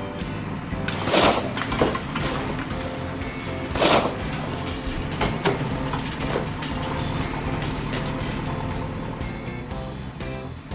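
Animated sound effects of a tracked bulldozer pushing a heap of rubble: a steady engine running, with short noisy surges of rubble being shoved, the strongest about a second in and about four seconds in, over background music.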